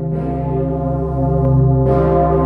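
The Pummerin, the 20-tonne C0 bell cast by the St. Florian foundry in 1951, swinging and ringing: its clapper strikes just after the start and again near the end, a little under two seconds apart, over a deep, long-lasting hum of many steady tones.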